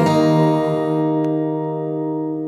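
Music: the closing chord of an acoustic guitar song, held and slowly fading away after the singing stops.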